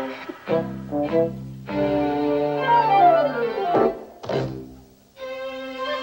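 Orchestral cartoon score for strings: short plucked notes, then a held string passage with a long downward sliding line. Two sharp strokes come around four seconds in, and the music dips almost to nothing before a new held chord starts near the end.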